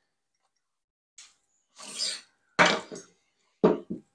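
A man clearing his throat and coughing briefly, a few short sounds after a silent first second.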